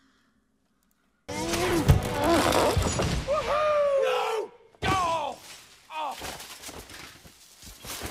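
Film sound effects: after a moment of silence, a sudden loud crash about a second in, then a jumble of crashing and cracking with a man yelling, and another crash at about five seconds.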